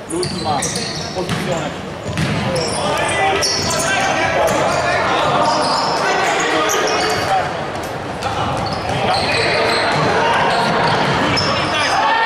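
Indoor futsal play: the ball knocked and bouncing on the wooden court, with many short high squeaks from players' shoes and indistinct shouting from players and spectators, echoing in the large hall.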